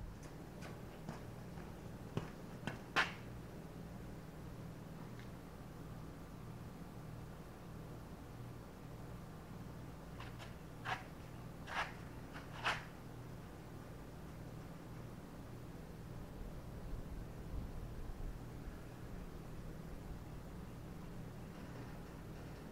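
A steady low hum, with light clicks or taps: three about two to three seconds in and three more around eleven to thirteen seconds in.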